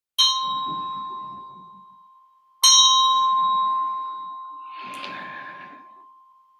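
A small handheld metal bell is struck twice, about two and a half seconds apart. Each strike leaves a clear, high ring that fades slowly. A soft rustle of handling follows near the end.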